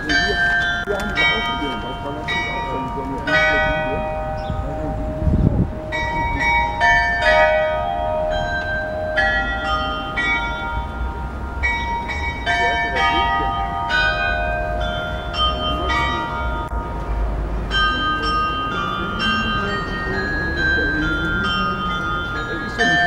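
Background music of bell-like chimes, quick struck notes ringing out in a melody.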